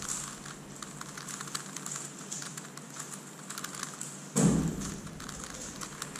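Megaminx being turned rapidly by hand: a quick run of plastic clicks as the faces snap round. A dull thump about four and a half seconds in is the loudest sound.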